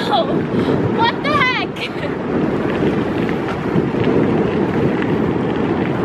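Wind buffeting the microphone of a camera riding along on a moving bicycle: a steady, loud low rumble. A woman's voice is heard briefly in the first second or two.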